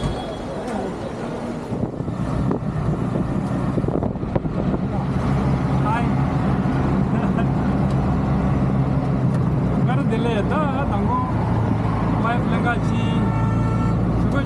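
Auto-rickshaw engine running, heard from inside the passenger cab in city traffic; its steady low hum builds from about two seconds in.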